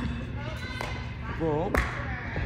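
A brief voice sound, then a single sharp thud on the gym's padded floor near the end, over a steady low hum of the large hall.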